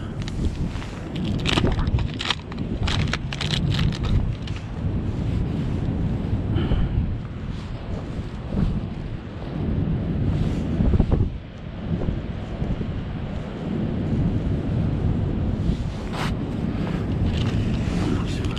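Wind blowing on the microphone, a steady low rumble, with scattered crackles and rustles from gloved hands handling a bait packet and hook.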